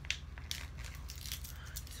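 Faint crinkling and scattered small clicks of plastic packaging being handled, over a low steady hum.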